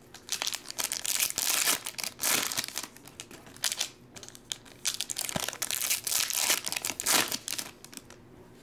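Foil trading-card pack wrappers crinkling and tearing as they are handled and opened, in irregular bursts with a short lull midway.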